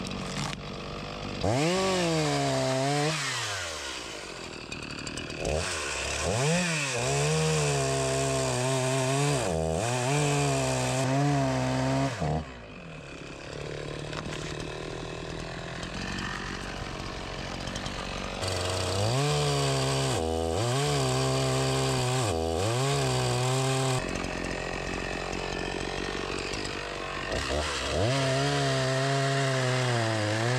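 ECHO two-stroke chainsaw cutting through logs. The engine is throttled up to full revs about four times, its pitch sagging and wavering as the chain bites into the wood, and it drops back to idle between cuts.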